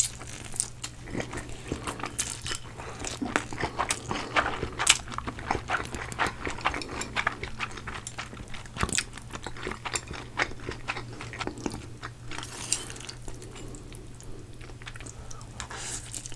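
Close-miked eating sounds of two people slurping and chewing stir-fried Samyang spicy chicken ramen noodles: a dense run of wet smacks and mouth clicks, with a longer slurp about three-quarters of the way through.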